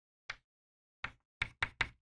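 Chalk tapping against a chalkboard while writing: five short, fairly faint knocks, one shortly after the start and four in the second second, the last three in quick succession.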